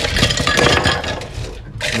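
Ice cubes dropped into a glass blender jar holding liquid, a rapid run of clinks against the glass and against each other that dies away after about a second and a half.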